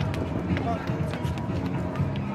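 Busy outdoor plaza: people talking in the background and sharp footfalls of people running on stone pavement, with music underneath.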